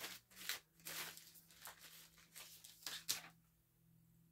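Faint crinkling and tearing of a package of socks being opened and handled by hand, a run of short crackles that stops about three seconds in.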